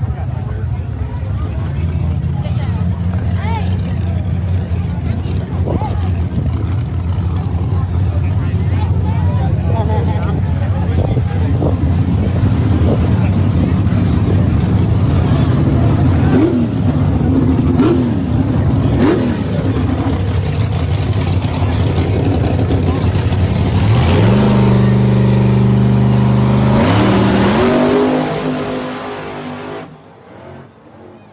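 Drag race cars' engines rumbling steadily at low revs while crowd voices come and go. About 24 seconds in the engines rev and climb in pitch as the cars launch, with a second climb after a gear change about three seconds later, then the sound fades quickly as the cars run away down the strip.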